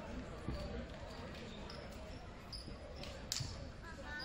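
Low background chatter of voices in a school gymnasium during a break in play, with a soft thump about half a second in and a sharp knock near the end.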